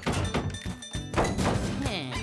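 Cartoon thunk sound effects over playful background music: one thunk at the start and a louder one just over a second in.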